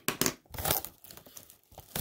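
A trading-card blaster box being torn open: crinkling and tearing of its packaging in a few short, irregular bursts, the busiest in the first half second.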